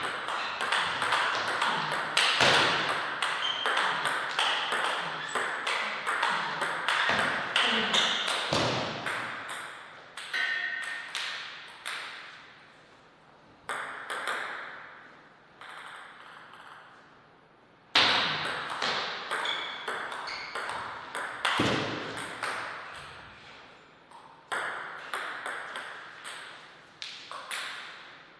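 Table tennis rallies: the ball clicking off the bats and bouncing on the table in quick succession. One rally runs through the first nine seconds or so, a few scattered bounces follow, and a second rally starts about eighteen seconds in.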